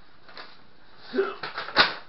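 A paper instruction booklet being handled, its pages rustling about a second in, followed by a sharp crack of paper near the end, the loudest sound.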